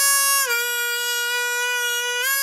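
Ten-hole diatonic harmonica in D playing a three-hole draw note that is bent down a step and a half. The pitch drops about half a second in and holds steady at the bent note.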